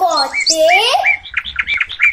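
Small birds chirping in quick, repeated short calls, with a voice speaking over them in the first second.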